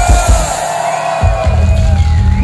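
Concert crowd cheering and whooping in reply to a question from the stage, over loud deep bass notes from the PA: one at the start and another coming in just past halfway.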